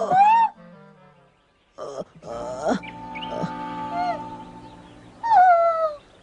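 Cartoon soundtrack: a character's high, bending cry, then a few falling musical notes and a short silence. Background music with a long held note follows, and near the end comes another cry that falls in pitch.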